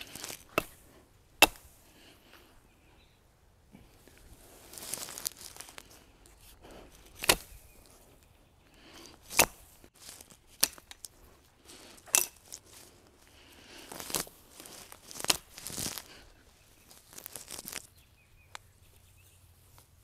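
Axe chopping branches off a fallen conifer: about half a dozen sharp, irregularly spaced strikes, with rustling and snapping of green needled branches in between.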